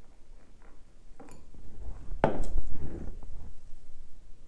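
A beer can and glass being handled on a table: a few small clicks, then a sharp knock about two seconds in as the can is set down, with soft handling noise around it.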